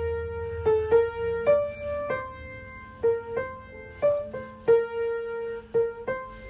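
A piano played with one hand: a simple melody picked out one note at a time, about ten notes at an uneven, halting pace.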